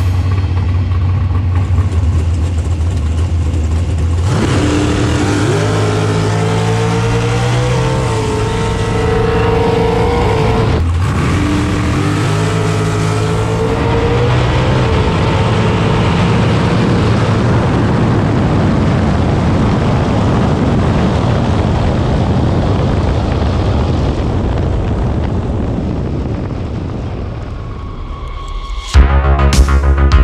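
Dragster engine heard from inside the car, idling steadily at first. From about four seconds in it revs several times with rising pitch, with a brief break around eleven seconds. It then gives way to a steadier, noisier sound that fades near the end.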